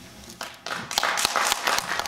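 Audience applause: a burst of many hands clapping that starts about half a second in and quickly grows dense.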